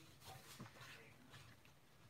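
Near silence, with a few faint, brief rustles and taps of card stock being handled and laid on a craft mat.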